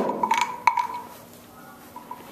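A pitched percussion instrument struck three times in quick succession, its ringing note fading over about a second: a classroom instrument played as the sound cue for the dog.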